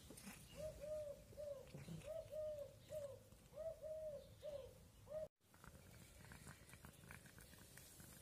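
A dove cooing faintly, a soft hooting note repeated about ten times in three-note phrases, stopping about five seconds in.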